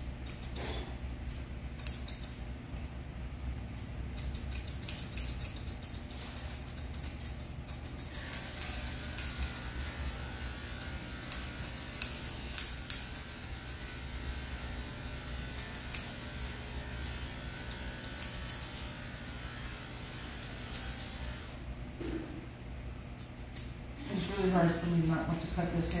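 Dog-grooming scissors snipping hair, a run of irregular sharp metallic clicks, over a steady low hum. A woman's voice starts near the end.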